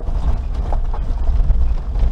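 Suzuki Jimny Sierra JB43 driving over a rough gravel track: a steady low rumble from the running gear, with irregular creaks and knocks from the body and suspension as it rides the bumps.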